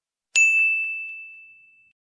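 A single bright ding sound effect, a bell-like chime that strikes once and rings out, fading over about a second and a half.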